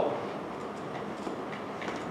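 Steady room tone in a lecture room: an even hum and hiss, with a couple of faint clicks in the second half.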